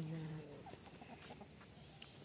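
Chickens clucking faintly, after a held low voiced sound in the first half second.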